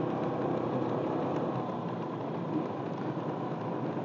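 A motor vehicle running steadily at low speed, a constant engine hum under an even rush of road and air noise.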